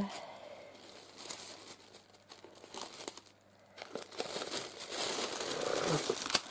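Tissue paper rustling and crinkling as hands unfold the wrapping in a gift box and lift the wrapped bundle out. The rustling is sparse at first, quiet for a moment in the middle, and grows denser and louder over the last two seconds.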